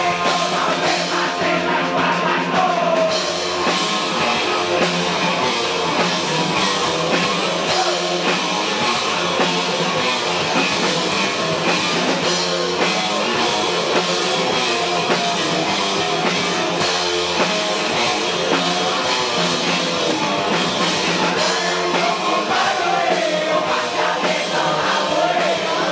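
A live rock band playing loud with electric guitars and a drum kit, a singer's voice coming in near the start and again near the end.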